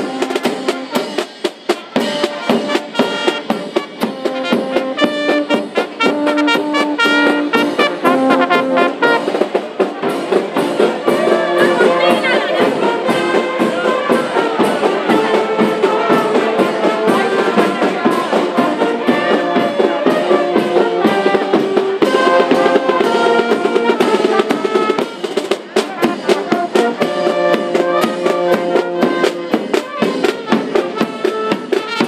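Street brass band playing: trumpets and other brass carrying the tune over a snare drum and bass drum beating a steady rhythm.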